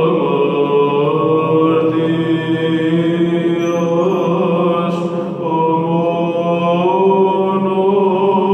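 Byzantine chant: a solo male cantor singing a Greek Orthodox hymn in long, held, ornamented phrases, with a short break about five seconds in.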